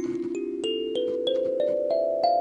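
Kalimba's metal tines plucked one by one in a rising scale, about three notes a second, each note ringing on under the next. The player judges that it sounds okay, near enough in tune for practice.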